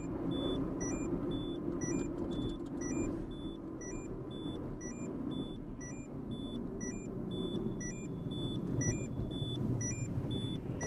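A car's seatbelt warning chime, a high short beep repeating about once a second, over the steady engine and road noise heard inside the moving car. The cans on the passenger seat set off the seat-occupancy sensor, so the car warns of an unbuckled passenger.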